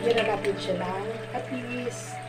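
A woman's voice talking briefly, with a steady low hum underneath.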